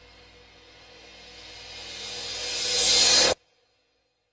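Dramatic score: a faint sustained drone under a rising hiss-like swell that grows steadily louder and brighter for about three seconds, then cuts off abruptly into silence.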